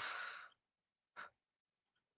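A man's breathy exhale into a close microphone, lasting about half a second, then a short faint breath about a second later.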